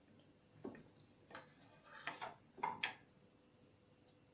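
Faint knocks and scrapes of a silicone spatula against a plastic blender jar: a handful of short sounds, with a sharper click about three seconds in.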